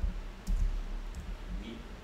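A few clicks of a computer keyboard and mouse, the sharpest about half a second in, as text is copied and pasted in a word processor.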